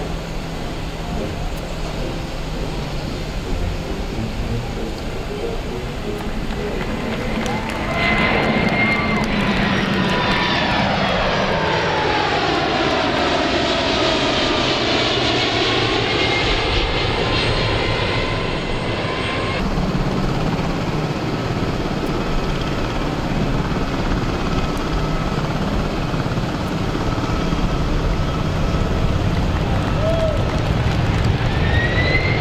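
Jet engines of a Boeing 747-400 freighter on a low flyby: a steady jet rumble that turns louder about eight seconds in. As the plane passes, a whine sweeps down in pitch and back up, and then the sound eases a little after about twenty seconds.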